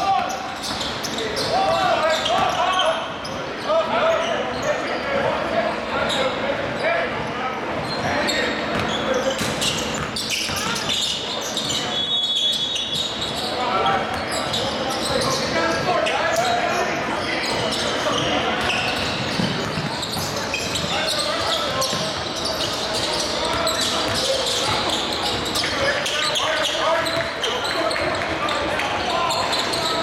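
Live basketball game sounds in a large gym: the ball dribbling on the hardwood floor, mixed with indistinct players' voices and calls. A brief high squeak comes about twelve seconds in.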